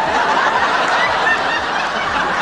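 Studio audience laughing loudly, many voices together.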